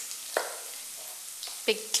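Steady sizzle of spring onions and ginger sautéing in oil in a pan.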